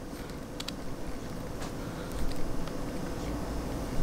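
Faint small ticks and scrapes of a metal star cap being threaded onto the head of a handheld laser pointer, over a steady low hum.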